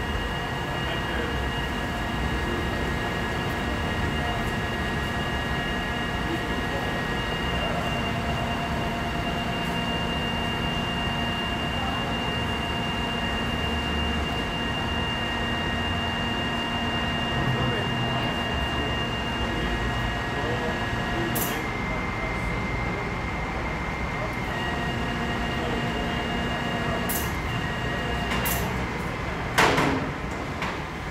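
Tilt-tray tow truck's hydraulic winch running as it draws a sedan up the tilted tray: a steady whining hum with several held tones. About two-thirds through, its pitch shifts after a click, then returns, and a sharp metallic clank sounds near the end.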